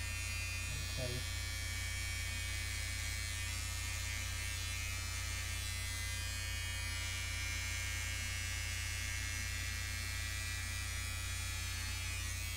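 Electric hair clippers running with a steady buzz while cutting hair.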